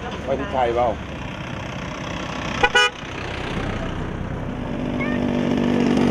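A vehicle horn gives two quick toots about three seconds in, after a few words of talk. Near the end a vehicle engine's steady hum comes up and grows louder.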